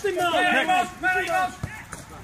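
A man's voice shouting for about the first second, then a single short thud about three-quarters of the way through.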